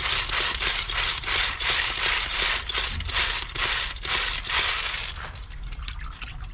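Pump-action paint brush spinner being plunged repeatedly, its mechanism rattling and clicking quickly as it spins the water out of a latex paint brush inside a bucket. It eases off about five seconds in.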